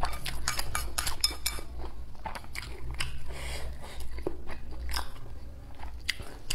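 Close-miked eating sounds: a person chewing a mouthful of hot pot food, with quick wet mouth clicks that come thick and fast for the first second and a half and then thin out.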